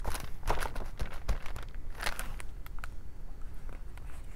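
Hands on a hardcover picture book: soft, irregular taps on the page and paper handling as the page is readied to turn.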